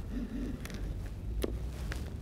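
A few light, faint clicks from a bait boat's plastic bait hopper being handled as a rig is set into it, over a steady low rumble.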